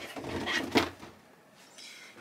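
Brief handling noise: a rustle with a sharp tap about three-quarters of a second in, then near quiet.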